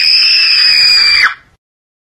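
A single piercing, very high-pitched shriek held at one steady pitch for about a second and a half, then cutting off abruptly.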